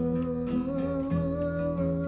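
A man's voice holding one long, slightly wavering note of a psalm refrain over acoustic guitar.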